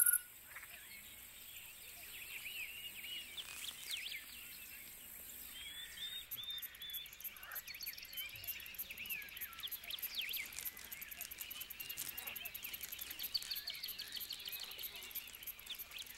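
Forest wildlife ambience: many small overlapping chirping calls throughout, joined about six seconds in by a high, very rapid insect-like pulsing.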